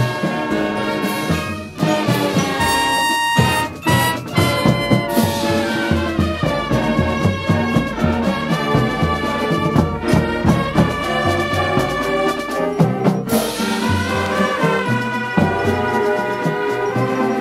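High school marching band playing a brass-led piece over a steady beat, with brief breaks about two and four seconds in and loud accents about five and thirteen seconds in.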